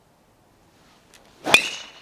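Golf driver swing: a rising swish of the club, then one sharp crack of the clubhead striking the ball off the tee about one and a half seconds in, with a brief high ringing ping after it. A flushed drive, really hit hard.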